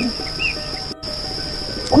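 Soundtrack of soft background music under forest ambience: a steady high insect chirr with a single bird chirp about half a second in. All sound drops out for an instant about a second in, at an edit.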